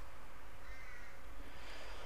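Room tone: a steady low hum with a faint, brief high-pitched call a little under a second in.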